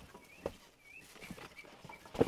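Quiet handling of a large cardboard box and its packing, with a couple of light knocks near the start and about half a second in. Faint short bird chirps sound in the background.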